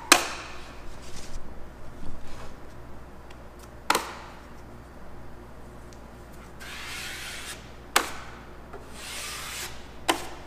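Drywall knife spreading all-purpose joint compound over screw heads on drywall and scraping it off, in soft scraping strokes. Three sharp clicks from the knife come at the start, about four seconds in and about eight seconds in.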